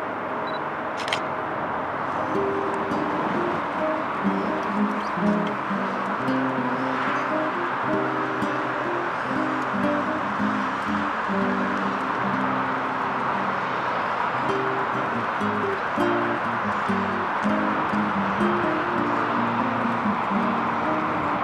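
Music: a melody of short plucked-string notes, like guitar, over a steady background hiss.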